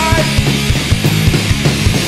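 Hardcore punk band recording: distorted electric guitars and bass over fast, steady drum hits, with high held guitar notes bending in pitch.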